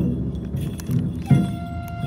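Taiko drum played in slow strokes: the low ring of one stroke dies away, then another heavy stroke lands about one and a half seconds in. Light metallic jingling runs beneath, and with that stroke a steady, high held note begins.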